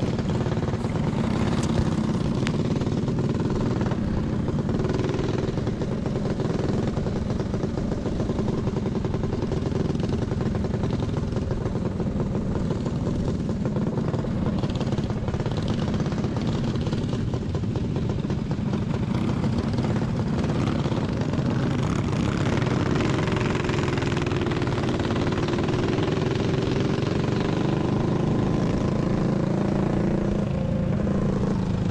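Onboard sound of a racing kart's Predator 212 single-cylinder four-stroke engine running at a steady, moderate speed while the kart circles slowly under a caution flag.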